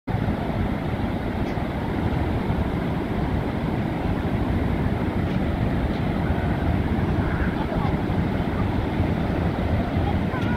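Wind rumbling steadily on the microphone over the continuous wash of breaking ocean surf.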